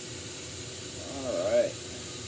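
Glassworking torch flame hissing steadily. About a second in, a short wavering voiced sound, like a hum or a brief vocal noise, rises over the hiss for about half a second.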